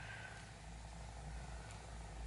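Quiet room tone: a faint, steady low hum with no clear event in it.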